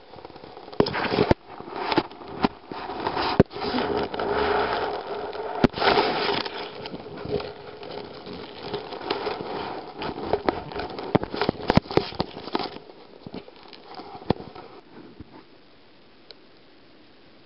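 Common toads (Bufo bufo) calling, a run of low croaks mixed with irregular sharp crackles and knocks close to the microphone, dying away near the end.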